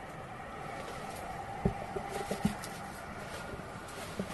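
Steady background hiss with a few soft, short low bumps a little before halfway through.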